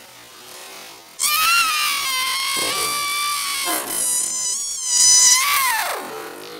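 A person's voice holding one long, very high-pitched screeching note for about four and a half seconds. The note starts suddenly about a second in, wavers slightly and drops in pitch as it ends.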